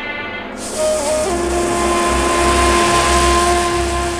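Music fades out at the start; about half a second in, a steady rushing hiss with a low rumble sets in, and about a second in a few long, steady held tones join it, a sustained soundtrack bed under the scene change.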